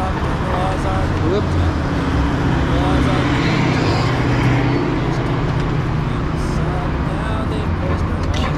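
Street traffic noise, a steady low rumble that grows a little louder toward the middle and then eases, under scattered indistinct talk from people close by.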